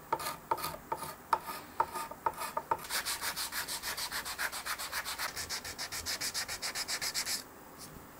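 Hand sanding of the back of a wooden guitar headstock with sandpaper. A few slower, separate strokes come first, then quick, even back-and-forth strokes at about eight a second, which stop abruptly shortly before the end.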